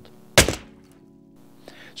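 A single sharp thud about half a second in, a slide-transition sound effect, followed by a faint held musical tone that fades away.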